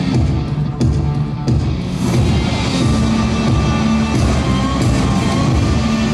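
Loud music. Sharp drum hits come in the first two seconds, then a fuller, sustained passage follows.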